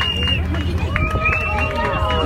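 Several people's voices calling out, overlapping, over a steady low rumble.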